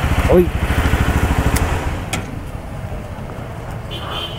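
A motorcycle engine idling with an even low putter, easing a little quieter after about two seconds.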